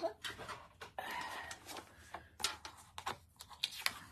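Cardstock being handled and slid across a cutting mat, with a short rustle about a second in, followed by several light taps and clicks as the crafting pieces are picked up and set down.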